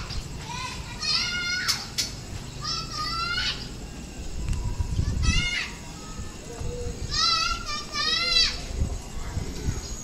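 Children's voices shouting and calling in several short high-pitched bursts, over a low rumble.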